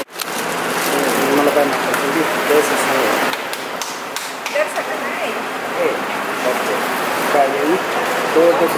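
Indistinct voices of several people talking in the background over a steady noisy hiss.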